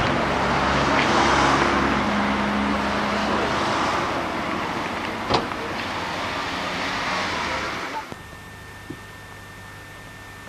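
A motor car's engine running close by, with outdoor road noise, loudest about a second in and slowly fading over the next several seconds. A sharp click comes about five seconds in. About eight seconds in the sound drops abruptly to a quiet hiss with a faint, steady high whine.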